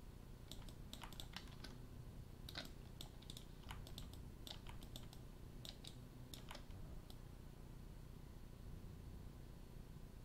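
Faint, irregular clicking of computer keys and mouse buttons, stopping about seven seconds in, over a low steady hum.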